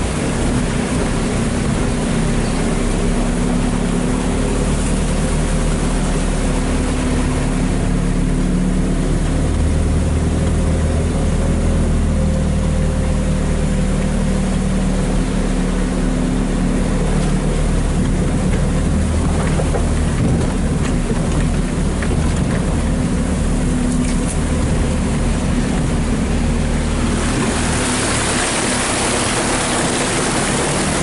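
Vehicle engine running steadily while the vehicle drives slowly through floodwater on a dirt track, heard from inside the cab. Near the end a louder rushing noise of water splashes beside the vehicle.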